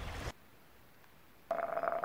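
Outdoor ambience cuts off suddenly, leaving about a second of near silence; then a steady buzzing, ringing tone starts about a second and a half in.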